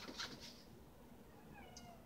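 Faint: two sharp clicks at the start, then near the end a short, meow-like animal call that falls in pitch.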